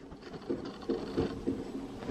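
Plastic extrusion machine running quietly, with a few short, soft low knocks.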